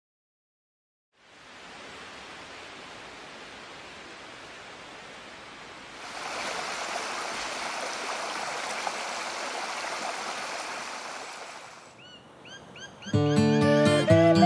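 Shallow stream running over stones, a steady rush of water that gets louder about halfway through. Near the end it fades, a few short rising chirps follow, and acoustic guitar music begins.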